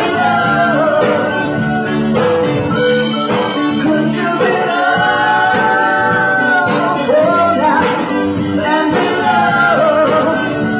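Live band, with electric guitar, bass guitar and drum kit, playing while a woman sings lead into a microphone; about halfway through she holds one long note.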